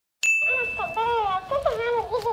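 A short ding just after the start, then a squeaky, very high-pitched voice talking: a dancing cactus toy speaking in its sped-up mimicking voice.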